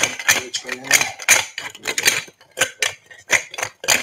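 Bar spoon stirring clear ice cubes in a chilled highball glass, with quick uneven clinks of ice and metal against glass, about four a second.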